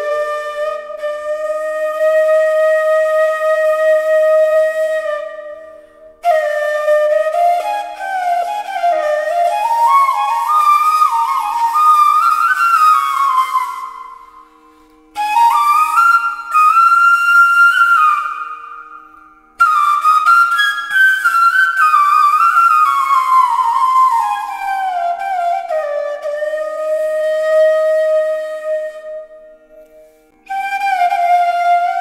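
Bamboo bansuri flute playing a slow, ornamented melody in four phrases with short breaths between them. The phrases are a long held note, a climbing run, a high passage, and a descent that settles on a long low note. Faint steady low tones sound underneath throughout.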